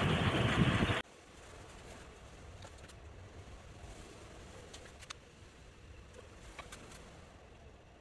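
Steady outdoor wind noise around the spinning homebuilt wind turbine. It cuts off suddenly about a second in to faint room tone with a few soft clicks.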